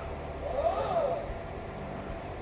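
Motors of the Celestron Origin's smart alt-azimuth mount slewing briefly: a faint whine that rises and falls in pitch over about a second, as the telescope speeds up and slows to a stop.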